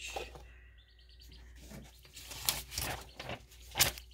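A faint bird chirping repeatedly in the background during the first half, then the rustle and light knocks of paper book pages being handled on a tabletop. The handling sounds are sharpest near the end.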